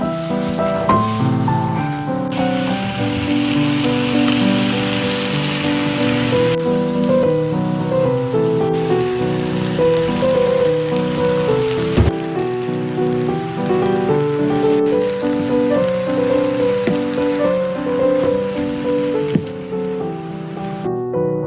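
Background piano music over the sizzle of tofu, fish cake and rice stir-frying in a frying pan; the sizzle swells about two seconds in and comes and goes after that, with a single knock partway through.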